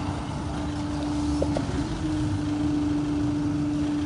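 A car engine idling: a steady low rumble with a constant hum over it.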